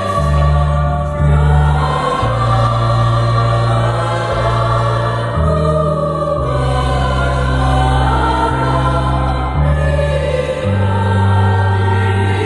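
Mixed church choir singing a Christmas hymn in parts, with electronic keyboard accompaniment holding low chord notes that change every second or two.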